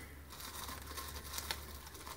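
Faint crinkling of tied plastic packaging being handled and cut, with a few light ticks.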